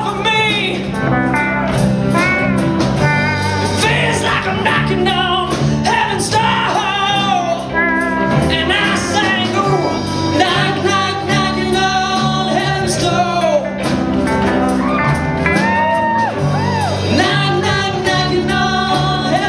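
A live rock band playing a song: two electric guitars, electric bass and a Ludwig drum kit, with a singer's voice carried over the band.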